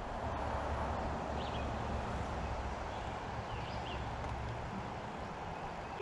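Steady outdoor background noise, an even hiss with a faint rumble low down. Two faint, brief high chirps come about one and a half and three and a half seconds in.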